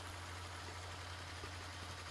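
Faint, steady low hum with a light hiss underneath, the background of the speech's amplified recording in a pause between phrases.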